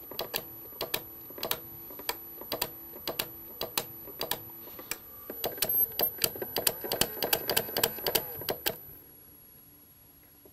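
Homemade oil-dosing timer clicking: a slow DC gear motor turns a toothed Perspex disc that trips a microswitch on and off, each pulse ticking the dosing pump, over a faint motor hum. The clicks come several a second, get louder and quicker about halfway, and stop about nine seconds in.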